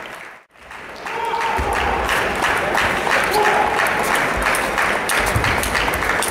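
Spectators applauding in a large sports hall, a dense patter of many hands with some voices calling. The sound cuts out briefly about half a second in, then resumes steadily.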